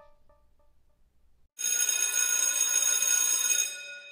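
The last sung note fades out in echoing repeats. About one and a half seconds in, a loud bell starts ringing steadily for about two seconds, then dies away.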